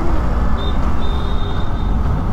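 Wind rush and motorcycle engine noise on an on-bike camera microphone while riding through traffic, with a faint, high, steady beep-like tone that breaks off twice in the middle.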